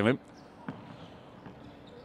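A basketball dribbled on a hardwood court: one clear bounce about two-thirds of a second in and a fainter one later, over faint arena background noise.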